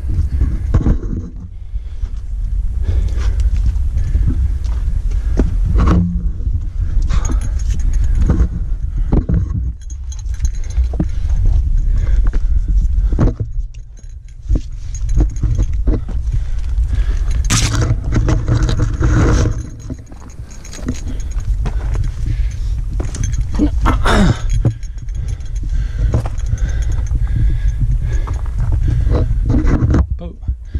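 Uneven low rumble of handling and movement on a body-worn camera's microphone, with scattered scrapes, clicks and rustles as a climber scrambles up steep ground, grabbing tree bark and rock with his hands.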